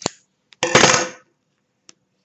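Small hard objects knocked and set down on a stone countertop: a sharp click, then about half a second later a louder clatter lasting about half a second, and a faint tick near the end.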